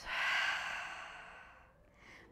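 A woman breathing out slowly and audibly in one long exhale, loudest at the start and fading away over about a second and a half.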